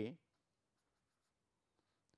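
Faint strokes of a felt-tip marker on paper as lines are drawn, over near silence.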